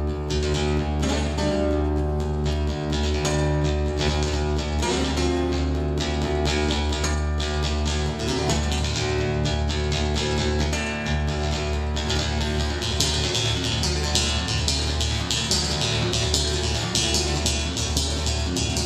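Solo fingerpicked custom handmade Wallace acoustic guitar: a steady bass line under a quick picked melody, getting brighter and busier in the last few seconds.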